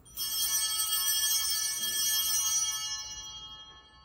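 A set of small altar bells (sanctus bells) rung, a bright high jingling ring that starts suddenly, holds for about two and a half seconds, then dies away.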